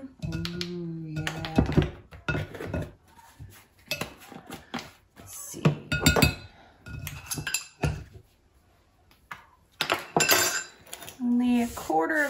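Metal spoon clinking, tapping and scraping against a mesh strainer and glass mixing bowl as flour and spices are sifted: an uneven run of light clinks and knocks, with a short quiet gap in the second half.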